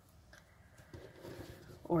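Faint handling of torn cotton fabric strips on a cutting mat: a quiet rustle that starts about a second in, after a near-silent start.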